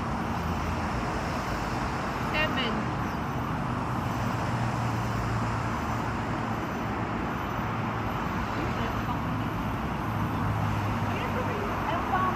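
Steady rumble of city traffic with faint, indistinct conversation from people close by.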